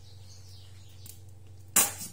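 A low steady hum, then near the end one short, loud swish or rustle as an arm sweeps in close over the salad bowl: handling noise of a sleeve or hand brushing near the microphone.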